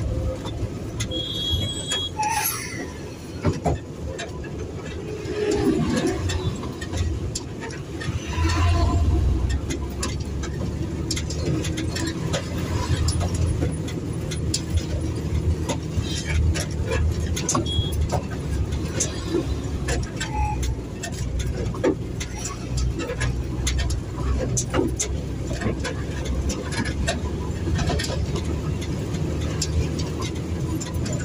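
A truck's engine running steadily as it drives along a rough road, heard from inside the cab, with frequent short rattles and clicks from the cab.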